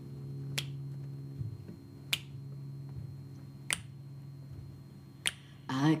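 Finger snaps keeping a slow beat, four crisp snaps about a second and a half apart, over the fading low hum of a guitar still ringing. A woman's voice starts singing just before the end.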